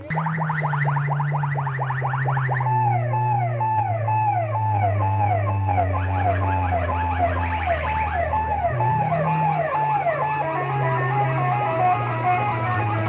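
Loud electronic siren-like synth effect played through a DJ sound system's horn loudspeakers. It opens with fast, rapidly repeating rising sweeps, then about three seconds in settles into a repeating warbling pattern, all over a steady deep bass drone.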